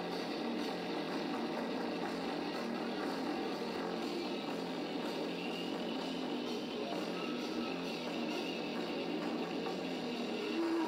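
A live rock band playing, with electric guitars and a drum kit together. The sound is thin, with almost no bass.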